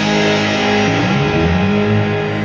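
Rock band's electric guitars letting a chord ring out after the drums drop away, with bass notes moving underneath from about a second in.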